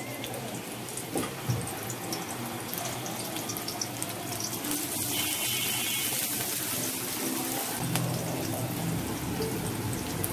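Sliced onions sizzling in hot oil in a large aluminium karai, a steady frying hiss that grows a little louder about halfway through as a wooden spatula stirs them.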